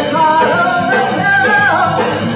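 Live rock band: a female lead singer sings a rising, held melody over electric guitar, bass guitar and drum kit.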